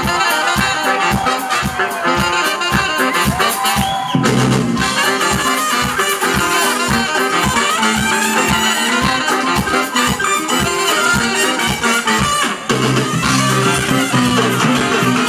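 Live funk band playing an instrumental passage led by a horn section of trumpet and saxophones over a steady beat, amplified in a live venue. The low end grows fuller about four seconds in.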